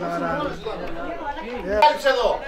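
Several voices overlapping in chatter and calls from spectators and players around a football pitch, with a sharp knock, the loudest sound, just before the end.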